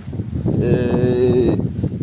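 A man's drawn-out hesitation sound, a flat, held "eee" lasting about a second, over a low background rumble.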